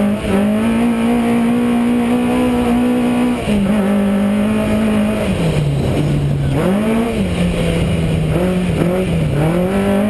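Race car's engine heard from on board while it laps a dirt track. The revs hold high along a straight, fall about five seconds in as the car slows into a turn, then climb again and rise and fall with the driving.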